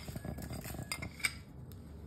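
Crushed mathri being added to a mixing bowl of chaat ingredients: light crackling and clinking of the pieces and a spoon against the dish, with a couple of sharper clinks about a second in, then it quietens.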